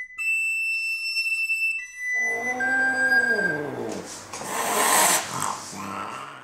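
Sopranino recorder playing a few shrill, held high notes, then a cat yowling: one long cry that falls in pitch and ends in a noisy, breathy wail.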